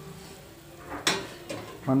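Water bubbling at a boil in an aluminium pot, with a short rushing burst about a second in.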